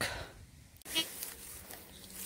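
Footsteps and rustling through dry grass as a metal detector is swept low over burnt ground. A faint steady low hum begins about a second in.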